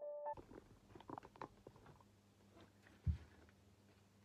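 Piano music cuts off just after the start. Then come faint scattered clicks and rustles of handling over a steady low hum, with one dull thump about three seconds in.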